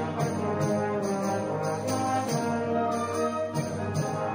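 Secondary school concert band playing, the brass and saxophones holding full sustained chords that shift about halfway through.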